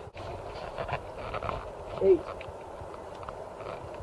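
Steady background hiss with one short, falling voice-like sound about two seconds in.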